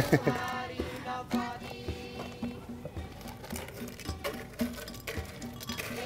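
Ice cubes tipped into a glass blender jar, knocking against the glass in several short clatters, over background music.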